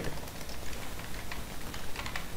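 Faint computer keyboard keystrokes, a handful of light irregular clicks over a steady hiss, as a username and password are typed.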